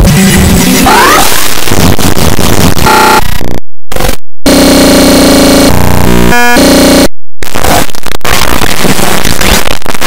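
Heavily distorted, clipped cartoon soundtrack: a loud, harsh wall of noise with garbled music underneath. It is broken by abrupt cuts to silence, two close together near the middle and one about seven seconds in, with a choppy stutter just before the last.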